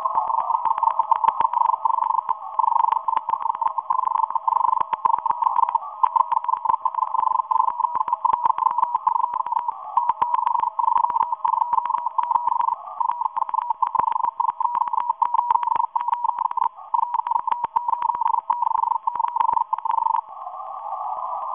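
Morse code from a Russian agent shortwave transmitter, heard on a radio receiver: a single tone near 1 kHz keyed on and off in fast, unbroken dots and dashes through a narrow filter, with faint clicks.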